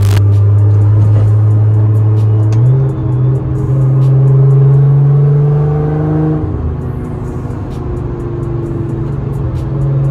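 Nissan GT-R's twin-turbo V6, heard from inside the cabin at highway speed, droning steadily. About a quarter of the way in its pitch steps up and climbs as the car accelerates. It drops away about two-thirds in and rises again near the end.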